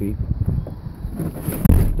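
Low, uneven rumble of the phone being moved about, with wind on the microphone and a short louder thump near the end.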